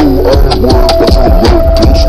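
Daycore remix of a trap hip-hop song, slowed down and pitched low: heavy sustained bass under a steady, rapid hi-hat pattern and held synth notes.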